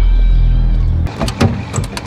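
A deep steady drone cuts off about a second in. It is followed by a few short clicks and knocks from a large car's door being handled.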